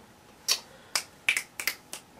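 Six or seven light, sharp clicks and taps, starting about half a second in and coming faster near the end, as a small hard object is set back among items on a shelf.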